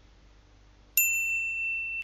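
A single bright electronic ding about a second in, a bell-like tone that rings on evenly for about a second and then cuts off abruptly: the notification-bell sound effect of an animated subscribe/like/bell overlay.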